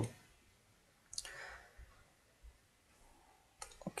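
Faint computer mouse clicks: one about a second in, trailing off briefly, and another near the end, with near silence between.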